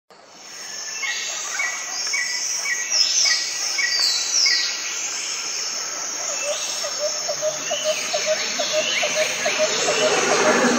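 Morning chorus of several birds over a steady high insect trill: a short chirp repeated about twice a second through the first few seconds, quick falling whistles, and from about six seconds in a low call repeated two or three times a second. The sound fades in over the first second.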